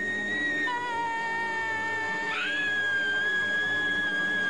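High-pitched held screams from several people in turn, each a long steady note. The pitch changes as a new voice takes over, about two-thirds of a second in and again just past two seconds.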